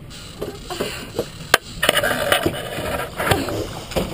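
Knocking and scraping of a landing net and gear against the side of a small fishing boat as a hooked salmon is netted. A single sharp knock comes about a second and a half in, then a clattering stretch with several knocks.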